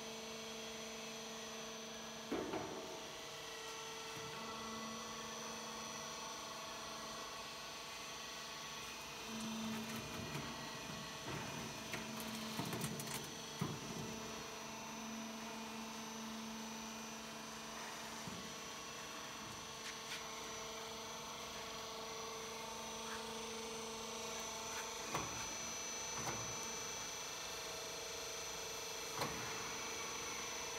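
Motor stator dismantling machine's hydraulic pump motor running with a steady electric hum. A few short metal knocks sound as a motor stator is handled and set onto the cutting die.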